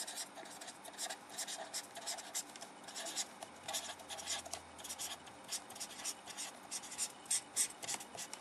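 Green felt-tip marker writing on paper: a quick, irregular run of short pen strokes as words and numbers are written out, ending with a hash mark drawn near the end.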